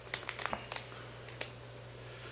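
Shiny foil food pouches crinkling and rustling as they are handled and lifted out of a plastic bucket, a few short, light crackles.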